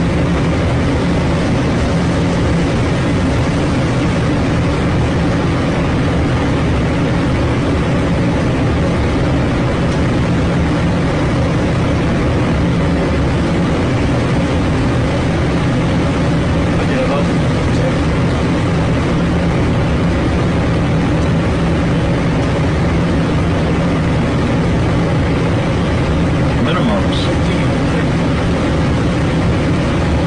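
Steady rushing airflow and engine drone inside an airliner cockpit on final approach.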